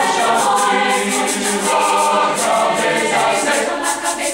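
Large high school concert choir singing in full harmony, many voices together, loud and steady throughout.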